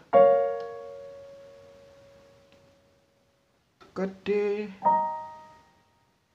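An A minor chord struck once on a piano keyboard, ringing and fading away over about three seconds. A D chord is struck near the five-second mark and fades out in the same way.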